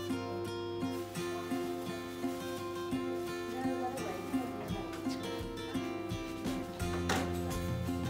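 Background music with a strummed acoustic guitar keeping a steady rhythm; deeper bass notes come in about seven seconds in.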